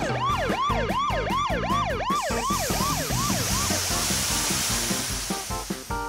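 Cartoon sound effect of a repeated swooping, siren-like whistle, about four swoops a second and slowing, over a bouncy music beat; about two and a half seconds in it gives way to a long rushing whoosh as the animated wave sweeps across the sky.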